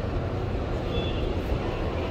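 Outdoor city street ambience: a steady low rumble with general background noise, and a brief faint high-pitched chirp about a second in.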